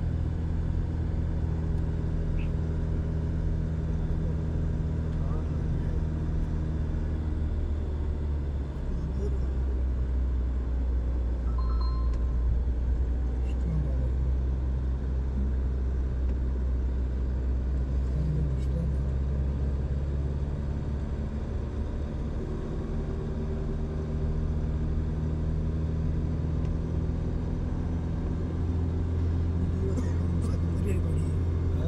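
Car engine running while driving, heard from inside the cabin with road noise; the engine note drops lower about nine seconds in and climbs again in the last third.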